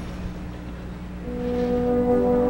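High school marching band in a soft passage: a low note is held, then about a second in the brass come in with a sustained chord that swells in volume.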